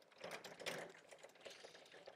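Faint, irregular taps and scuffs of someone working at a classroom blackboard. They are strongest in the first second.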